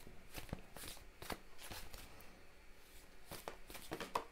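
A tarot deck being shuffled by hand: faint, irregular papery taps and slides of the cards against each other, a few a second.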